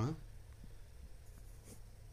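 Room tone with a low steady hum and a faint tick near the end, right after a voice trails off at the very start.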